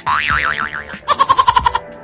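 Cartoon comedy sound effect: a wobbling boing tone for about a second, then a quick run of about ten short beeps, over background music.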